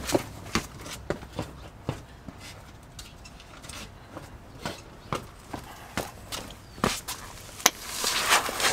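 Footsteps on stone paving, heard as scattered, irregular short knocks and scuffs, with the loudest near the end as the person walks back.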